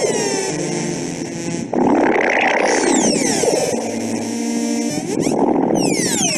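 Electronic soundscape: sustained synthesizer chords with high tones sweeping downward every couple of seconds, over patches of noisy, hissing texture.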